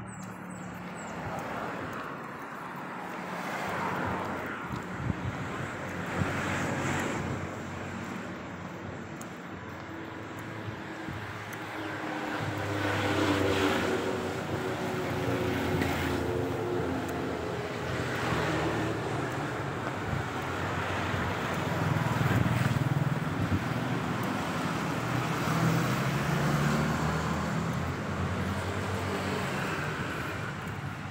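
Road traffic: motor vehicles running and passing, the engine hum and road noise swelling and fading several times. Two short sharp knocks come about five and six seconds in.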